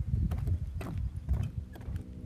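Footsteps on the wooden deck planks of a pier: a few heavy, thudding steps in a row, with small knocks and creaks from the boards.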